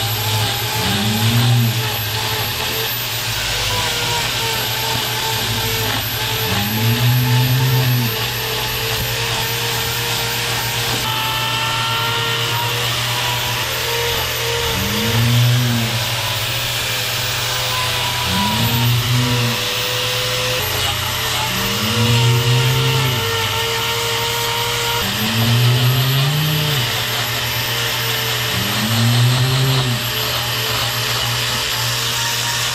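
Angle grinder with a trimming disc running steadily against a cow's hoof claw. A cow bellows about seven times over it, each call rising and falling over about a second; she is nervous at being separated from her group, not in pain.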